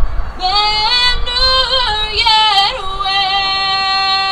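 A woman's solo voice singing unaccompanied through a PA, the national anthem: a wavering phrase that climbs, then a long held note near the end.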